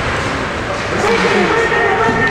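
Indistinct voices calling out across an ice hockey rink over a steady noisy din, with a clearer call about a second in.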